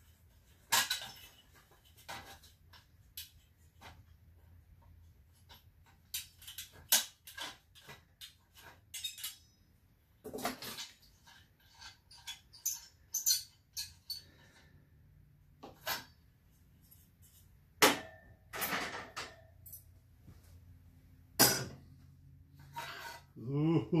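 Irregular light metal clinks and knocks, with a few louder clatters, as the sheet-metal ventilator hood and its top nut come off a vintage Sears single-mantle gas lantern and its glass globe is lifted free.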